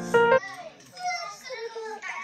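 A short musical note, cut off suddenly, sounds in the first half-second. Then a young girl talks quietly in a high voice.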